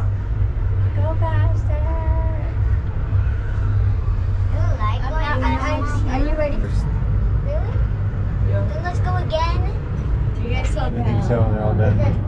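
Steady low rumble inside an enclosed Ferris wheel gondola as it lifts away from the platform and climbs, with voices chatting at intervals.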